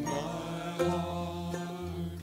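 Small acoustic band of mandolin, banjo and acoustic guitar playing, with male voices singing long held notes.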